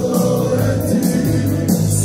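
Herzegovinian folk song played live by a band, with a male lead singer holding a long note and a group of men nearby singing along, over a steady beat.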